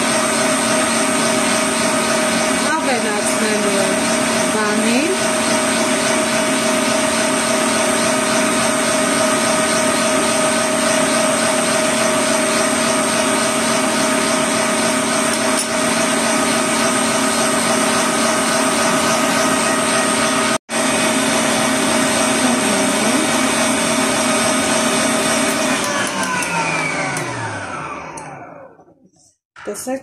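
Kitchen stand mixer's motor running steadily at high speed, its wire whisk beating eggs in a stainless steel bowl. Near the end the motor is switched off and winds down with a falling whine.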